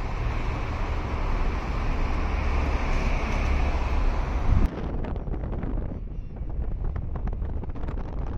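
Road noise from a moving car with wind rumbling on the microphone, a steady low roar. It changes abruptly about four and a half seconds in to a thinner, fluttering wind noise.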